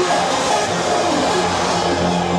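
Hardstyle dance music played loud over a club sound system, a passage of held synth chords with no clear drum beat.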